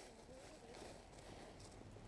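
Near silence, with faint rustles and a few light clicks from a fabric backpack being handled.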